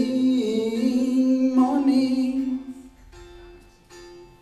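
A man singing a slow, sad love song in long held notes over quiet instrumental accompaniment. The voice stops about two and a half seconds in, leaving soft held instrument notes.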